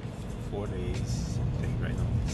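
Steady low rumble inside a Shinkansen bullet train's passenger cabin, with a couple of brief voice sounds over it, one about half a second in and one near the end.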